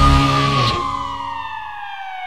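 End of a TV programme's closing theme music: the beat stops, and a long siren-like tone slides slowly down in pitch, fading out.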